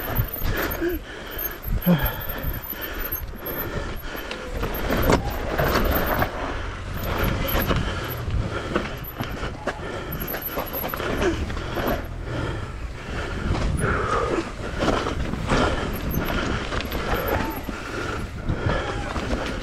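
Mountain bike riding fast down a rough dirt trail: a steady rumble of tyres and air over the camera, with constant clicks, knocks and rattles from the bike jolting over roots and rocks.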